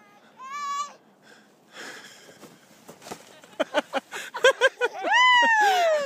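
A toddler crying: short sobbing cries from about halfway, building into one long falling wail near the end. A brief wavering vocal call sounds about half a second in.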